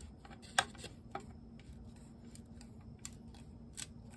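A metal hand tool working a small piece of wood by hand: a run of short, irregular scrapes and clicks, the sharpest about half a second in.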